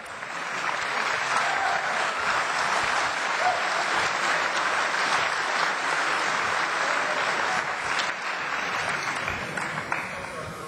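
Audience applauding, rising within the first second, holding steady for several seconds, then dying down near the end.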